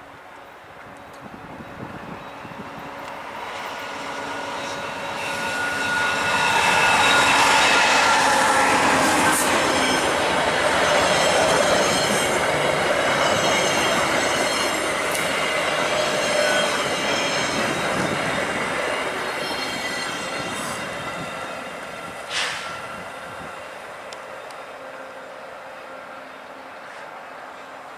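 VIA Rail passenger train, a P42DC Genesis diesel locomotive hauling four LRC cars, approaches, runs past and slows on arrival, with a high squeal from the wheels and brakes. The sound builds over several seconds, is loudest as the cars go by, then fades as the train draws to a stop, with a single sharp knock near the end.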